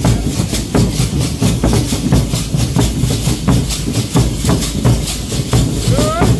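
Congado drums and shaken rattles playing a steady, driving percussion rhythm, with no singing over it.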